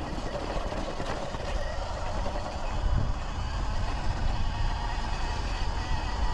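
Sur-Ron Light Bee X electric dirt bike ridden along a dirt trail: a steady low rumble of wind and tyres on the helmet microphone, with a faint motor whine.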